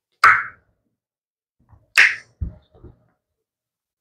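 Two short breathy puffs close to the microphone, about two seconds apart, the second followed at once by a soft low thump.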